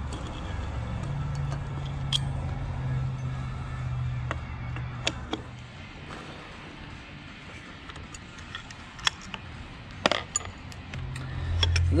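Light metallic clicks and clinks, a few scattered taps, from hand tools and clutch bolts as a motorcycle clutch's pressure-plate bolts are worked loose with a long socket extension. A low steady hum runs under the first few seconds.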